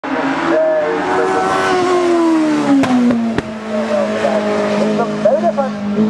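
Hillclimb race car's engine running hard, its pitch falling over the first three seconds and then holding steady, with two sharp clicks near the middle. A voice comes in near the end.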